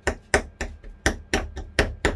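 Metal fork repeatedly stabbed into a raw beef steak on a plate, making sharp knocks at about three to four a second.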